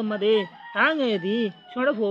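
A man's voice reciting in a sing-song chant, its pitch gliding up and down with some held notes, in three short phrases.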